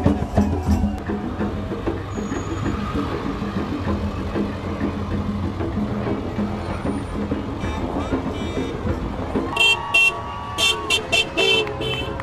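Passing cars honking their horns: a longer horn blast followed by a quick series of short beeps near the end, over steady traffic and crowd noise.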